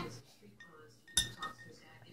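A spoon clinking once against a cup, sharp and brief, about a second in: the milk and melted chocolate bar being stirred.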